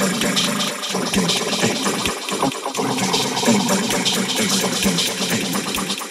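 DJ mix on club decks with the bass cut out: a dense, busy passage of chopped vocal and sample sounds with little low end.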